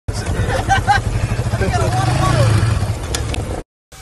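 Quad bike (ATV) engine running close by, a steady low rumble, with people's voices over it. The sound cuts off abruptly shortly before the end.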